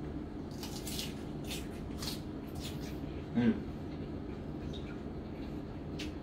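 Small wet mouth clicks and lip smacks from tasting a balsamic vinaigrette, followed about three and a half seconds in by an appraising 'hmm', over a steady low hum.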